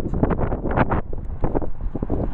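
Wind buffeting the microphone: a loud, low rumble broken by irregular gusty blasts.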